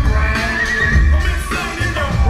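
Live hip-hop music over a concert PA: a heavy, recurring bass beat under a high, wavering melodic line.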